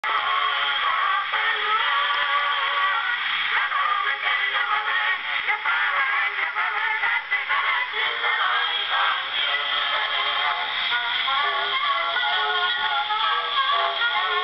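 Edison cylinder phonograph playing a recorded song through its horn: a singing voice with musical accompaniment, thin in tone with almost no bass.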